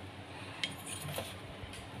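Quiet kitchen room tone with two faint light clinks, one just after half a second in and a smaller one a little past a second.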